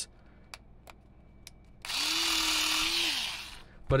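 Cordless rotary electric scissors running for about a second and a half while cutting through a USB cable: a steady motor whine that rises as it spins up and drops as it stops, under the rasp of the blade chewing the cable. A few light clicks come before it.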